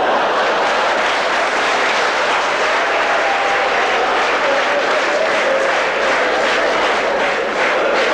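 A live theatre audience applauding, a dense steady clapping that starts abruptly, with faint voices in the crowd.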